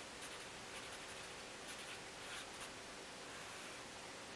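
Felt-tip pen writing on paper: a few faint, short scratching strokes as a couple of words are written.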